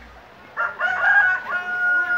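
A rooster crowing once, starting about half a second in and ending on a long held note.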